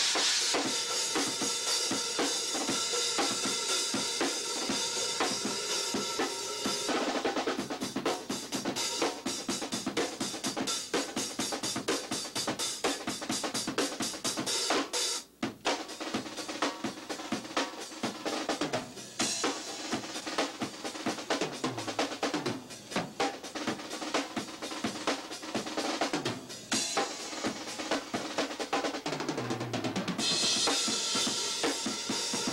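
Rock drum kit played hard: a dense wash of cymbals over the drums for the first seven seconds or so, then fast strokes on bass drum and snare, with a momentary break about halfway through.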